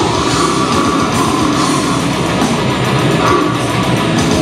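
Death metal band playing live: heavily distorted electric guitars and bass over fast, dense drumming, loud and unbroken.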